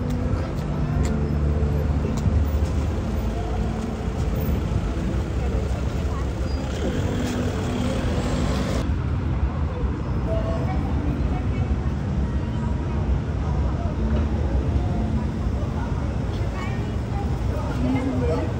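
Busy street ambience: the steady low rumble of car and taxi engines on the road, with people's voices talking nearby. A hiss builds from about six and a half seconds in and cuts off suddenly about two seconds later.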